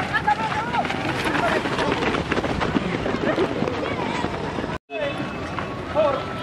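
Babble of many voices talking and calling over one another. The sound cuts out completely for a moment a little under five seconds in.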